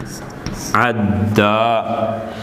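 Chalk scraping on a blackboard as the last letters of an Arabic phrase are written, then a man's voice intoning the Quranic words in long, drawn-out chanted notes, in the style of Quran recitation.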